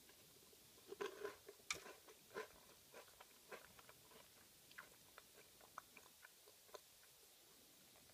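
Close-miked biting and chewing of a Pukupuku Tai, a fish-shaped wafer snack filled with aerated chocolate. A few crisp crunches come about a second in, then softer, sparser crunches and mouth clicks follow, dying away near the end.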